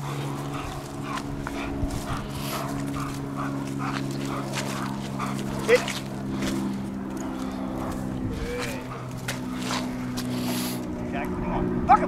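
German Shepherd giving a few short whining yelps while it waits on leash, keyed up before a protection bite. A steady low drone runs underneath.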